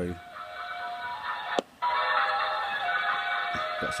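Ice cream van style chime music being transmitted on the channel 38 lower-sideband CB channel, heard through a CB radio's speaker as a thin, band-limited melody. It breaks off with a click about one and a half seconds in and comes back louder.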